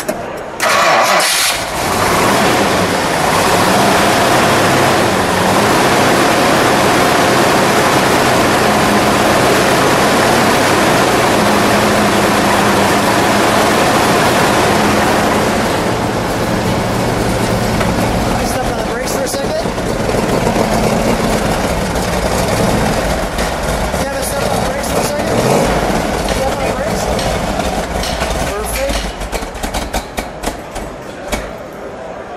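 1970 Plymouth Cuda's 426 Hemi V8 starting about a second in, then idling loud and steady; in the second half the note rises and falls a little.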